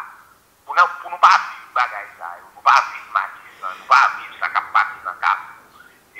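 Speech only: a person talking in quick syllables after a brief pause, the voice thin with little bass.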